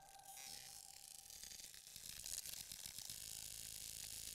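Faint crackling, static-like electronic noise made of fine rapid clicks, slowly growing louder at the quiet opening of an electronic track.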